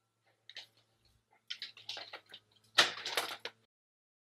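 A dog scratching and clawing, an irregular run of sharp clicks and scratches that grows denser and louder near the end: the dog is trying to get to a cat.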